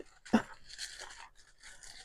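Faint rustling and crinkling of a printed paper envelope being unfolded and handled by hand, with a brief sharper sound about a third of a second in.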